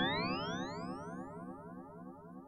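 Tail of an electronic intro sound effect: a rich synthesized tone gliding steadily upward in pitch while fading out, over a faint rapid pulsing.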